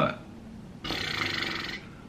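A man's breathy exhale: a hiss about a second long, starting a little before the middle and stopping sharply.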